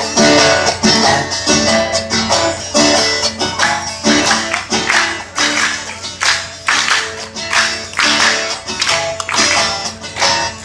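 Live country music played through a stage PA: an acoustic guitar strummed in a steady rhythm over bass notes.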